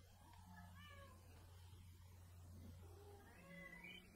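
Near silence with a low steady hum, and two faint short animal calls that rise and fall in pitch, one a little after the start and one near the end.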